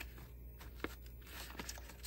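Faint rustling of a paper instruction sheet being handled and turned over, with one small click a little under a second in.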